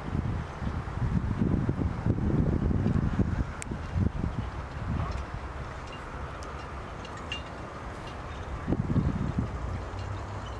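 Wind buffeting the microphone in gusts: a rumbling that is heaviest in the first few seconds, eases off around the middle, and picks up again near the end.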